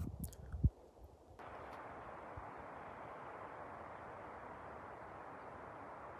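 A few low thumps in the first second, then a steady, faint, even hiss of outdoor background noise that cuts off suddenly at the end.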